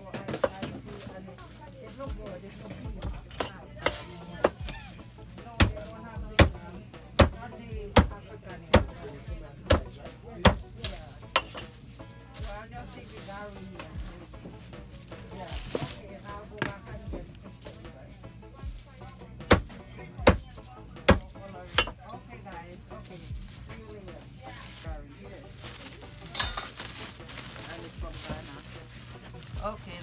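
Butcher's cleaver chopping pig tails into pieces on a wooden block. The sharp chops come about one a second for several seconds, then after a pause a few more.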